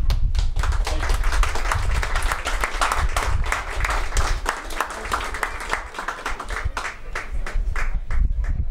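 Audience applauding, a dense patter of hand claps that thins out near the end.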